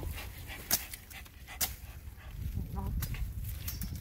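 A hunting dog panting and snuffling with its head in an armadillo burrow among rocks, searching for the animal. There is rustling throughout, with two sharp clicks, one under a second in and another about a second later.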